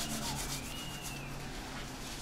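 Hands rubbing together, a soft dry friction noise, with a faint high squeak about half a second in.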